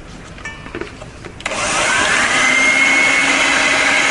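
Electric hand mixer switched on about a second and a half in, beating cake batter in a bowl. Its motor whine rises as it spins up, then runs loud and steady.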